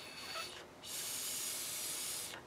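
Breath blown through a blow pen, spraying yellow marker ink onto paper: a steady airy hiss lasting about a second and a half, after a shorter, fainter puff at the start.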